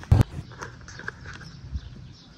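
A single sharp knock just after the start, then faint footsteps on grass and a soft thump near the end.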